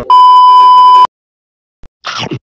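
A loud, steady electronic beep at one pitch, the classic censor-bleep tone, lasting about a second and starting and stopping abruptly.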